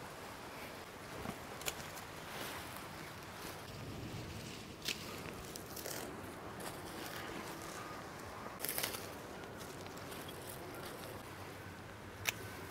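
Faint rustling of leafy flower stems being handled, with a few short sharp clicks spaced several seconds apart, a double one near the end.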